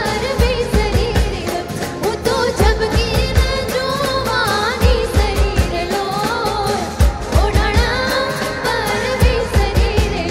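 Live Gujarati garba music: a woman sings an ornamented melody over a band, with clusters of heavy low drum strokes every couple of seconds.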